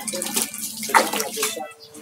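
Water splashing and sloshing as a hand sweeps through a plastic basin, with a garden hose running into it; the loudest splash comes about a second in.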